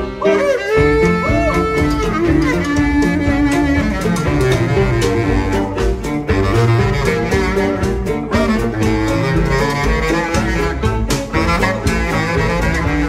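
Live band playing an instrumental break: a bass clarinet to the fore over bowed cello, double bass and drums.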